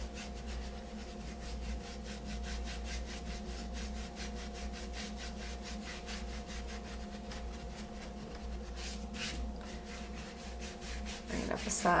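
A paintbrush scrubbing paint onto a wooden plank in quick, even back-and-forth strokes, blending dark blue shading along the bottom edge. A faint steady hum runs underneath.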